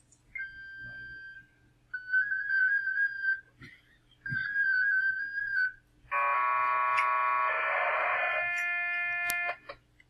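FLDigi amateur-radio digital-mode transmission audio. First comes about a second of steady carrier tone that opens the transmitter. Then two warbling single-tone bursts, the handshake that tells listeners which protocol follows. Last comes a dense chord of many parallel tones, a multi-carrier mode sending several data streams at once, which cuts off sharply near the end.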